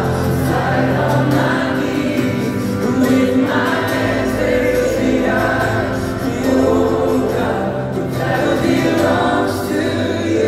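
A live worship band playing while a large arena crowd sings along with the lead singer, heard from high in the stands.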